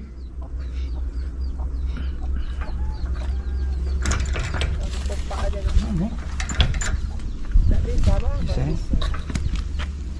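Iron-barred cell door and its padlock being worked at by hand in an attempt to pry it open, giving a scatter of sharp metal clicks and rattles from about four seconds in, over a steady low rumble.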